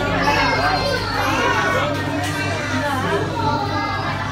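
Children's voices chattering and calling out in an enclosed ride capsule, several at once, over a steady low hum.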